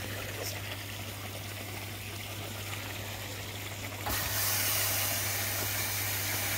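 Koi pond drum filter with water running steadily through it over a low, even hum. About four seconds in, a louder hiss starts suddenly as the drum's cleaning cycle kicks in, its spray flushing the caught debris straight to waste.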